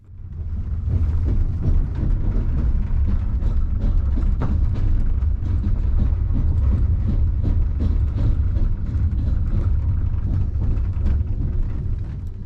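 Steady low rumble of a moving train heard from inside a sleeper-car compartment, with frequent small clicks and rattles from the running gear. It fades in over about the first second.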